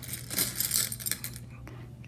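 Jelly beans rattling and clattering as a metal tablespoon scoops them out of a bowl. The clatter is busiest in the first second, then thins to a few light clicks.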